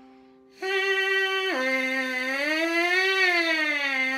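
Bare trumpet mouthpiece buzzed by lips: a note starts about half a second in, steps down, then slides smoothly up and back down in pitch, held through the rest. The notes are joined without a break, demonstrating slurs with the tongue set for the syllable хо.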